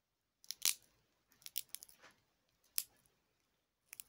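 Close-up crackling: irregular sharp snaps and clicks, the loudest just over half a second in, then a quick cluster around the middle and one more near the end.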